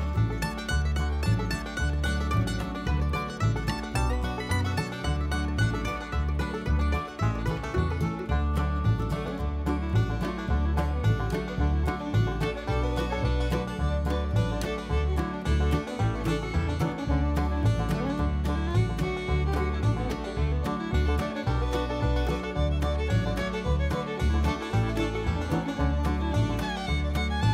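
Upbeat bluegrass-style background music with banjo and a steady beat.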